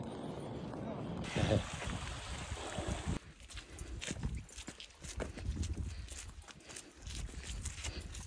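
Footsteps on wet bare rock: irregular scuffs and taps from about three seconds in. Before that a steady rushing noise, with one short voice-like sound about a second and a half in.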